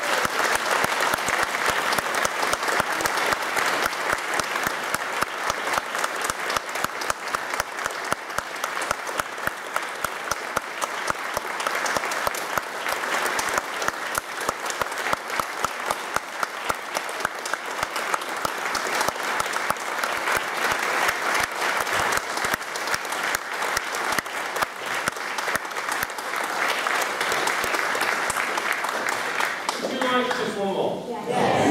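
Concert audience applauding: dense, steady hand-clapping throughout, with single sharp claps standing out close by.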